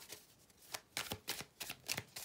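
A deck of tarot cards being shuffled by hand: quiet at first, then from under a second in a run of quick, irregular card snaps and riffles, as the cards are mixed before one is drawn.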